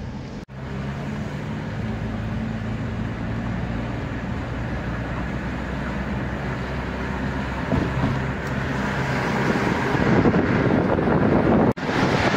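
A car driving, heard from inside the cabin: a steady low engine hum with tyre and road noise, which grows louder over the last few seconds. The sound drops out for an instant twice, about half a second in and near the end.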